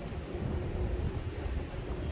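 City street ambience with a low, uneven rumble of wind on the microphone over a faint hum of traffic.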